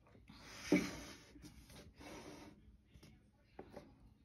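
Handling noise from painting supplies: a few short bursts of rubbing and rustling with a sharp bump about a second in, then two light clicks near the end.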